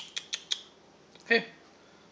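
Four quick short creaks in the first half-second, then a person says "yeah" with a laugh.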